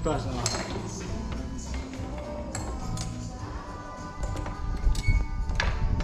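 Old hinged garage door being pushed to swing, its metal fittings clinking and knocking, with a steady held tone in the second half.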